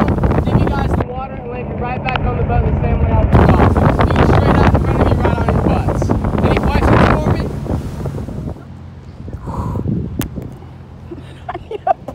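Wind buffeting the microphone over the steady running of a motorboat's engine, with indistinct voices mixed in. The noise drops off about two thirds of the way through, and a single sharp click follows a little later.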